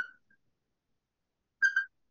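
Dry-erase marker squeaking on a whiteboard while writing: a brief squeak at the start, then two short squeaks near the end, with silence between.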